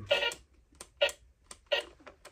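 Battery-powered Pikachu swing toy giving short, evenly spaced bursts of sound, three in two seconds, with light clicks between.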